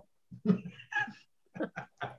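A man laughing: a couple of drawn-out laughs, then a quick run of short "ha" bursts about four or five a second in the second half.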